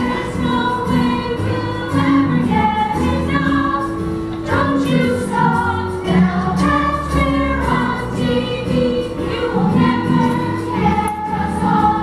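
A stage chorus of mixed voices singing together in a musical number, over sustained low accompaniment notes.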